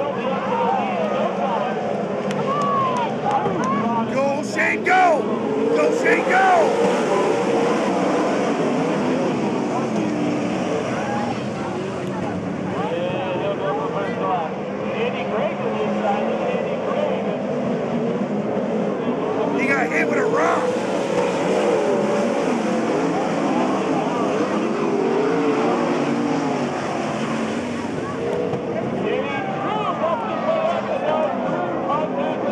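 Several sprint cars' V8 engines racing on a dirt oval. Their pitches rise and fall as the throttles open and close through the turns, with louder surges about five seconds in and again about twenty seconds in.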